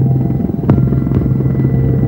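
Mi-24 Hind helicopter flying low, its main rotor and twin turboshaft engines giving a steady, loud low hum with a rapid rotor beat. A single sharp crack sounds about a third of the way in.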